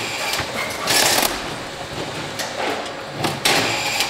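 Automatic carton strapping machine running, with a short burst of hiss about every two seconds as it cycles.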